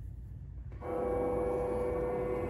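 Animatronic fogging reaper's built-in speaker starting its soundtrack suddenly about a second in: a steady, droning musical tone with many overtones, over a low steady rumble.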